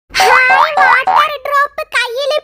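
Cartoon-style 'boing' sound effects: a run of about five quick, high-pitched upward-sliding sounds with a voice-like quality, over a steady held note.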